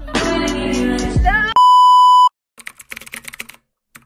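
Music that cuts off about one and a half seconds in, then a loud, steady electronic beep lasting under a second, followed by a quick run of keyboard-typing clicks, a typing sound effect.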